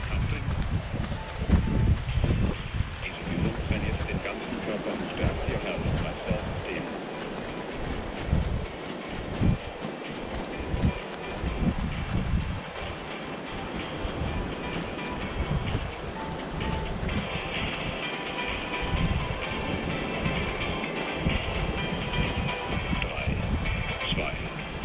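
Gusty wind rumbling on the microphone over background music.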